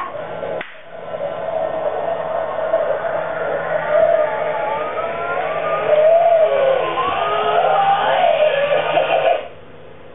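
A single sharp clap-like sound near the start sets off an animatronic Evil Cauldron Witch prop. Its motor hums steadily as the witch rises out of the cauldron, under a recorded sound track of music and gliding voice effects from its speaker. Everything cuts off suddenly about nine and a half seconds in.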